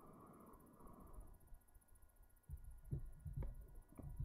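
Breath blown into a smouldering tinder nest on a charred ember to coax it into flame: a soft, breathy blow in the first second or so, then a few low thumps near the end.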